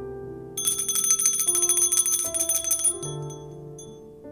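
Altar bells shaken rapidly for about two and a half seconds, starting about half a second in, marking the elevation of the chalice at the consecration, over soft sustained keyboard chords.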